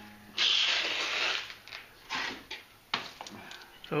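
Small aquarium gravel rattling and shifting in an enamel pot as it is handled: a rattle of about a second, then a few shorter rattles and a click.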